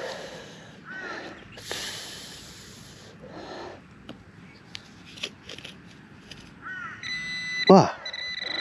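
A serrated digging knife cutting and scraping through turf and soil in several short strokes, with a few light clicks. Near the end a metal detecting pinpointer sounds a steady high beeping tone over a target.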